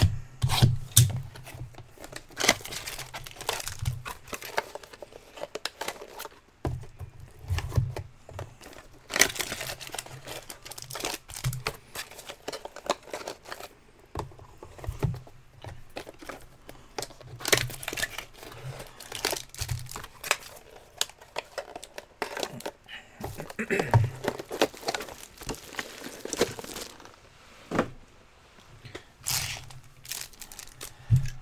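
Plastic shrink-wrap being torn off trading-card hobby boxes, with plastic and foil wrappers crinkling as they are handled: irregular rips and rustles with frequent sharp crackles.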